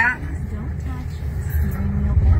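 Steady low rumble of road and tyre noise inside the cabin of a Waymo Jaguar I-PACE electric robotaxi on the move, with no engine note. A voice starts faintly near the end.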